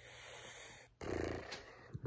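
A man's breathy, wordless sigh or hum through the nose, starting suddenly about a second in and lasting under a second.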